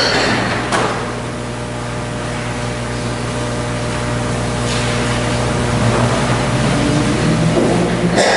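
Church organ holding sustained chords, gradually swelling louder, with the chord changing near the end. Two brief knocks sound in the first second.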